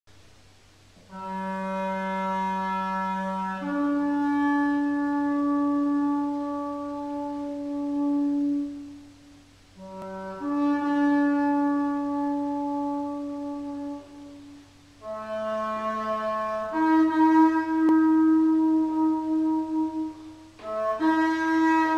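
A Chalimeau, a wooden single-reed instrument between clarinet and shawm, played in a stairwell. It plays three slow phrases of long held notes, each stepping up from a lower note to a higher one, with short breaks about nine and fourteen seconds in.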